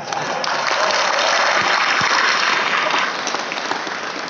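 Audience applauding, loud for about three seconds and then dying away.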